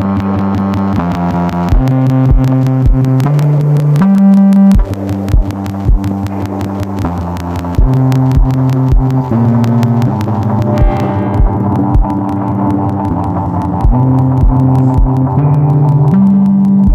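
Experimental electronic music: low, droning synthesizer notes that shift in pitch every second or so, over a recurring low thump.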